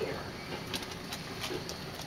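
Pot of water at a rolling boil, bubbling steadily, with a few light splashes as pieces of pork spare rib are dropped in to parboil.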